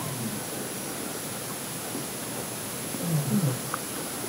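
Quiet room hiss with a faint steady high whine, broken by a few short, low murmured sounds from the worshippers' voices during the silent prostration, the last of them about three seconds in.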